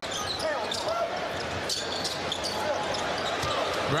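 Basketball arena game sound: a steady crowd murmur with the ball bouncing now and then on the hardwood court and faint voices underneath.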